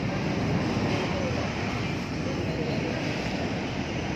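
Storm wind and heavy rain: a steady rush of noise, with gusts buffeting the phone's microphone.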